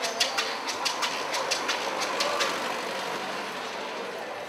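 Hand percussion in a quick, even rhythm of sharp clicks, about five a second, stopping about two and a half seconds in; a steady background hubbub remains.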